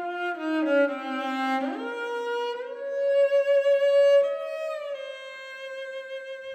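Slow, sustained melody on bowed strings, cello to the fore, the notes sliding up into a long held tone and later sliding down again.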